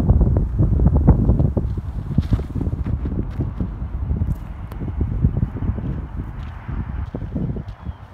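Wind buffeting the microphone in gusts, a loud low rumble that is heaviest in the first couple of seconds and then eases. Scattered light clicks and scuffs sound over it.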